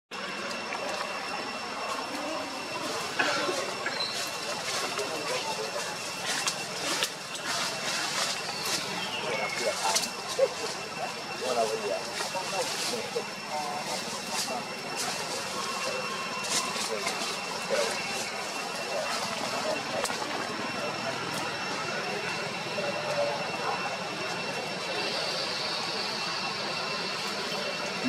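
Forest ambience: a steady, high-pitched insect drone with scattered clicks and rustles, mostly in the first two-thirds, and faint voice-like sounds underneath.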